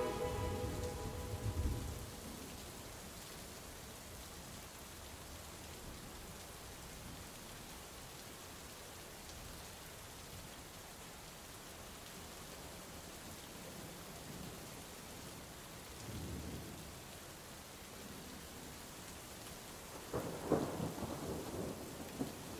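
Faint steady rain with low rolls of thunder: one just after the start, one about three-quarters of the way in, and a louder one near the end. The last notes of the song fade out at the very start.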